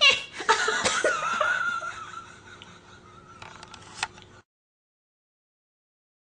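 A woman laughing in a high, wavering voice, loud at first and then trailing off. The sound cuts to silence about four and a half seconds in.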